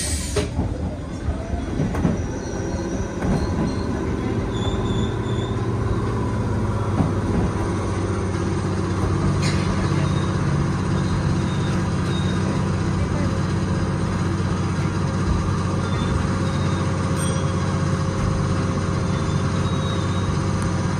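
Keisei 3400-series electric train running as heard from the driver's cab as it pulls away from a station: a steady low motor and gear hum with rail and wheel noise, and an occasional click from the track.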